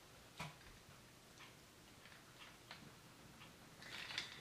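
Faint, scattered clicks and taps of a plastic transforming-robot toy's parts being handled and pressed together, with the clearest click about half a second in.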